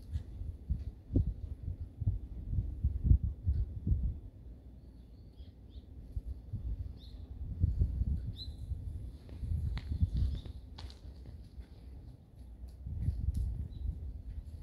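Wind buffeting a phone microphone outdoors in uneven low gusts, with a few faint high chirps in the middle.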